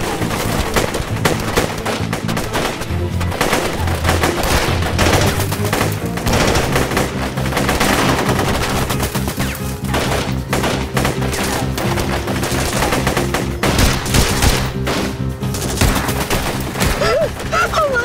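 Heavy automatic rifle fire in a sustained firefight: rapid, overlapping bursts of shots with no let-up, over a low, sustained music score.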